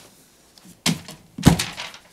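Two dull thunks about half a second apart, the second louder and deeper.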